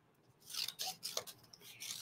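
Scissors snipping through cardstock: a few short cuts, starting about half a second in.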